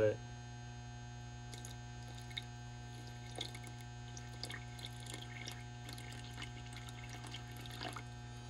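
Distilled water trickling from a plastic jug into the fill hole of a flooded lead-acid battery cell, with faint small splashes and drips, topping the cell up to the bottom of its plastic fill well. A steady low hum runs underneath.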